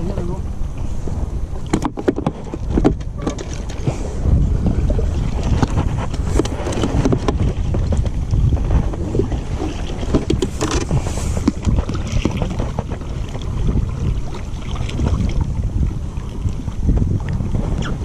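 Wind rumbling on the microphone over water sloshing against an inflatable boat's hull, with a few sharp knocks from handling about two, three and ten seconds in.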